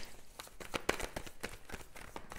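Oracle cards being handled and shuffled by hand: a quick run of soft, irregular clicks and rustles.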